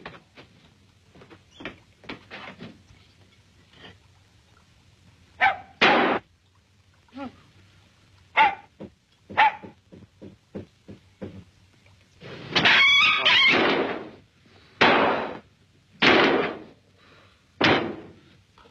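A dog barking in short bursts, several times over, one longer cry about twelve seconds in, with scattered small knocks and thuds between.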